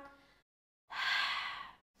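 A woman's audible breath out, like a sigh, about a second in, with a fainter breath just after: breathing in time with a Pilates leg-circle exercise.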